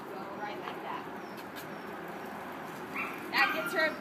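Steady outdoor background noise, then a person's voice starting about three seconds in.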